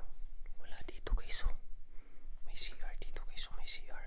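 A person whispering in two breathy stretches, one about half a second in and another from about two and a half seconds to near the end.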